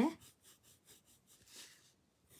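A pencil shading on paper: faint, short scratchy strokes, one slightly louder about one and a half seconds in.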